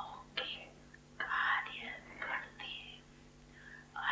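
Faint whispered voice sounds: a few short, breathy, hushed syllables with no voiced tone, over a steady low hum.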